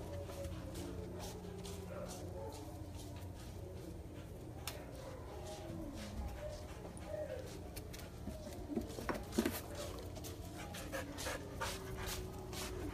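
Several dogs howling and whining faintly, set off by a dog fight they heard, with a few louder whines about nine seconds in.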